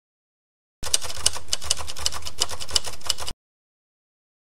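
Typewriter sound effect: rapid key clatter with louder strikes about three times a second, starting abruptly and cutting off suddenly.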